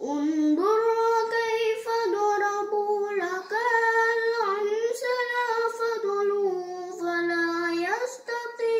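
A boy's voice reciting the Quran in melodic tartil chant: long held notes that step and slide between pitches, with brief pauses for breath. The line sinks to a low held note near the end.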